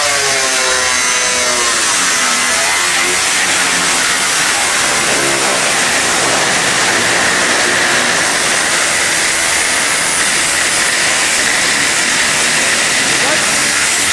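Angle grinder with a cut-off disc slicing through the sheet-metal hood of a Nissan 200SX: a loud, steady high whine and grinding hiss, wavering in pitch in the first couple of seconds, stopping at the very end.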